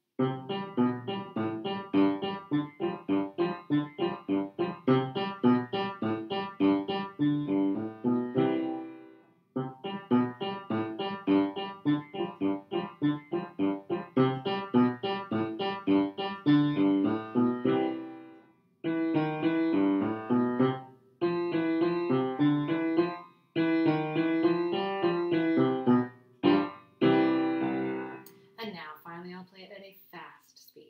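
Piano playing a duet accompaniment part on its own at a medium tempo, in steady eighth notes. The notes run in phrases, with short breaks about 9 and 18 seconds in, and the playing stops about two seconds before the end.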